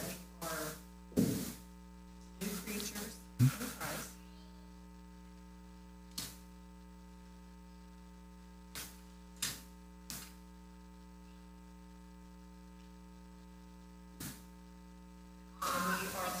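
Steady electrical mains hum from the room's sound system. It is broken by a cluster of brief soft sounds in the first few seconds and a handful of isolated short ticks later on.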